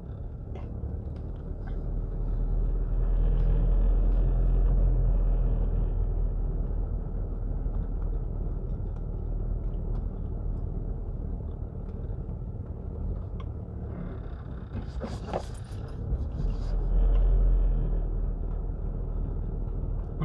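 Car engine and road noise heard from inside the cabin while driving slowly: a steady low rumble. It grows louder a few seconds in and again near the end.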